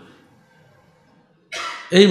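A man's single short cough into a close microphone, coming suddenly about one and a half seconds in after a near-quiet pause.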